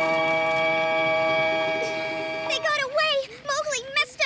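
A held chord of cartoon background music that stops about two and a half seconds in, followed by short wordless voice cries that waver up and down in pitch.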